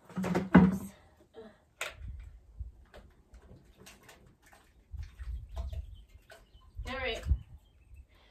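Handling noise of plastic buckets and a jug: a string of clicks and knocks with stretches of low rumbling, as lime mixed with water is dumped into a bucket. A brief murmured vocal sound comes near the end.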